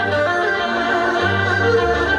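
Two erhus bowed together in a duet, playing a singing melody of held notes that change pitch every half second or so, over a low bass accompaniment.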